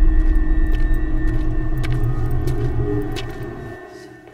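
A loud, steady low rumble with a thin steady high tone and scattered faint clicks, fading away over the last second.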